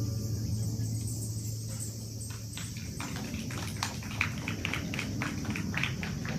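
The last acoustic guitar chord of a song dies away, then scattered hand clapping from a small audience starts about two seconds in and goes on irregularly.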